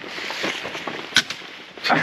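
Pistol crossbow fired once about a second in: a single sharp snap of the string release, over faint outdoor background.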